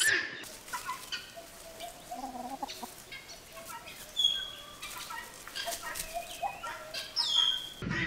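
Domestic hens clucking softly here and there as they forage, with a few short, high whistled bird calls among them, one about halfway through and one near the end.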